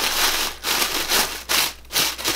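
Packaging crinkling and rustling in several short, uneven stretches as hands dig into a mailed box of cloth diapers.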